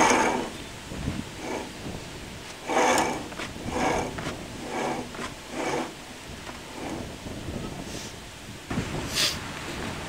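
Band sawmill blade wheel worked by hand: several short, irregular scraping strokes as the bandsaw blade is forced against a cut jammed with wet sawdust.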